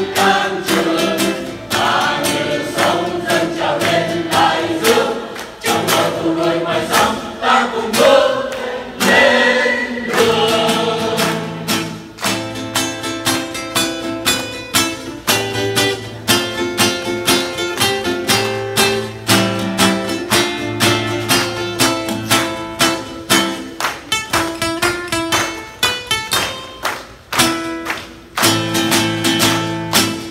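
Mixed choir of men and women singing a Vietnamese song to a strummed acoustic guitar. About ten seconds in, the strumming settles into a brisk, steady beat under the choir.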